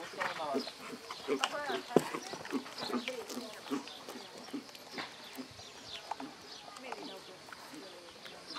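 A horse cantering on a sand arena, its hoofbeats landing as soft thuds with one sharper knock about two seconds in, while a person's voice talks over it.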